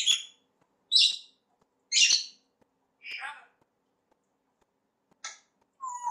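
African grey parrot calling: a series of short, loud, high-pitched squawks about a second apart, the first three the loudest, followed by a lower, fainter call and two brief calls near the end.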